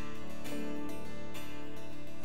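Worship band playing a song's instrumental intro: acoustic guitar strumming over held keyboard notes, just before the vocals come in.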